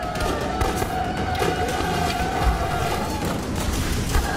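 Film trailer soundtrack: dramatic score holding one long high note that fades near the end, over battle sound effects of repeated sharp cracks and low thuds.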